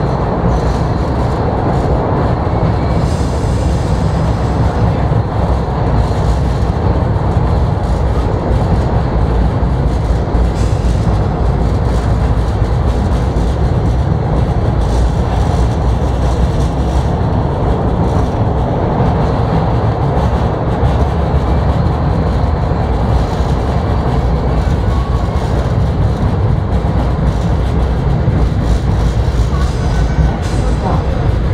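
Subway train running through a tunnel: a loud, steady rumble of the cars on the rails that never lets up.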